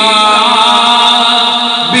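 A man singing a naat through a microphone, holding one long note for most of the time after a quick rise in pitch, the note breaking off near the end.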